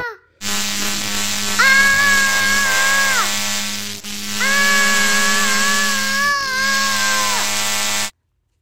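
Electronic time-machine warp sound effect: a steady buzzing drone with two long held wailing tones over it, each about three seconds, ending in a sudden cut-off.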